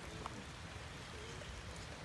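Faint, steady rain falling during a thunderstorm.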